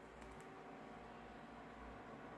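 Near silence: faint room tone with a low steady hum, and two faint clicks shortly after the start from a smartphone being handled and tapped.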